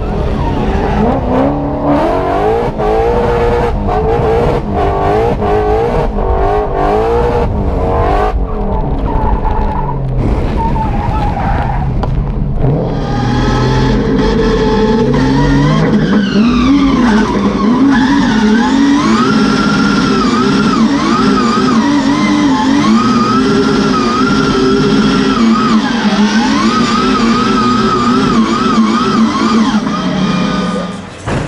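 Drift car engine revving hard, its pitch rising and falling quickly as the car slides, with the tyres skidding. About halfway through, the sound cuts to the same kind of hard revving heard from inside a caged car's cabin, the revs swinging up and down every second or two.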